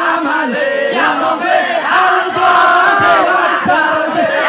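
A group of men chanting loudly together to a hand-played rebana frame drum ensemble.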